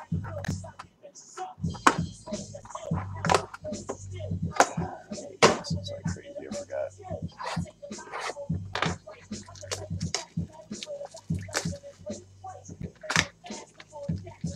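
Plastic shrink wrap crinkling and tearing, with cardboard tapping and scraping, as a sealed trading card box is unwrapped and opened by hand. The sound is a run of sharp, irregular crackles and taps.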